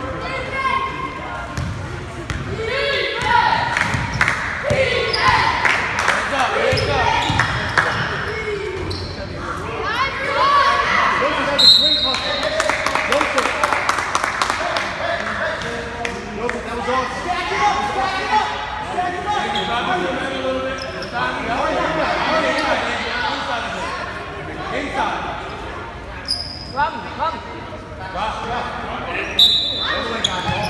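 A basketball bouncing and dribbling on a hardwood gym floor amid the chatter and shouts of players and spectators, echoing in a large hall. Two short, high-pitched squeaks come through, about twelve seconds in and near the end.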